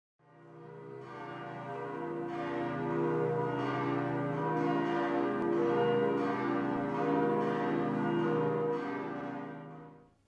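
Several church bells ringing together in a continuous peal, the call to a service. The ringing fades in over the first couple of seconds and fades away just at the end.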